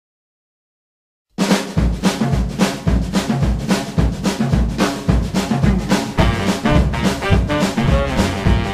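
Silence for a little over a second, then a boogie-woogie band kicks in: a drum kit plays a steady swing beat with bass drum and snare, with bass notes under it.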